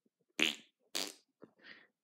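A person blowing raspberries with the lips as a rude reply: two short buzzing bursts about half a second apart, the first the loudest, then two fainter ones.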